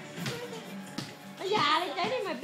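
Voices over background music, with a young child's excited, high-pitched voice loudest about one and a half seconds in.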